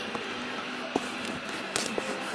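Steady background hiss with a low hum, broken by a few short knocks and rubs of a phone being handled as it is moved.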